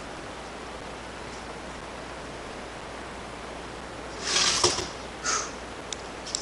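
Steady background hiss, broken by two short noisy rustles a little past four seconds and just past five seconds.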